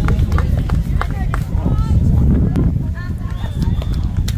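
Indistinct voices of people on a football sideline, in short snatches of talk and calls, over a steady low rumble of wind on the microphone, with a few sharp clicks.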